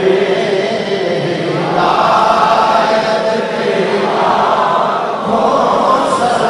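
A large crowd of voices chanting together in a sustained, loud devotional chant, swelling about two seconds in.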